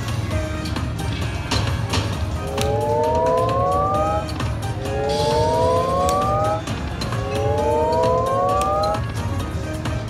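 Video slot machine sound effects during a free-spins bonus: three rising electronic tones, each about two seconds long, play one after another while the reels spin, over short clicks and steady casino background noise.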